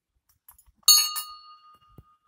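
Small hanging temple bell rung by hand: two quick strikes about a second in, then a clear ring that fades slowly.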